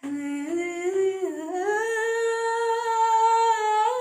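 A woman singing unaccompanied, holding one long wordless note that steps up in pitch twice early on and then holds steady.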